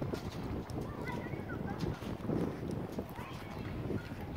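Footsteps on the planks of a wooden boardwalk, a run of hollow knocks at walking pace.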